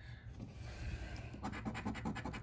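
A coin scratching the coating off a paper scratch-off lottery ticket, starting about a second and a half in as a run of quick, rapid strokes.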